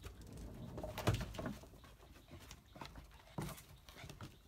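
An over-excited puppy's short yips and whines, with paws pattering and scuffling on wooden deck boards; irregular short sounds, the loudest about a second in.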